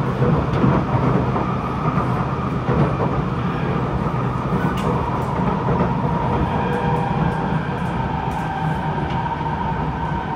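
Kawasaki C751B metro train running at speed between stations, heard from inside the passenger car: a steady rumble of wheels on rail with a few faint clicks, and a steady whine that grows clear about halfway.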